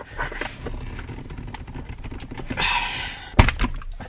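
Chevy Colorado's stock shift knob being pulled off the automatic shift lever: small clicks and rubbing of plastic under a hard pull, then a sharp clack about three and a half seconds in as the tight-fitting knob comes free.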